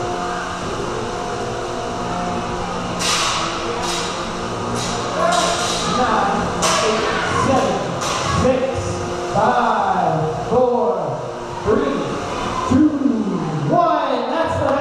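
Small 3 lb combat robots clashing in a polycarbonate box arena: a handful of sharp knocks between about three and eight seconds in, with people's voices in a reverberant hall taking over in the last few seconds.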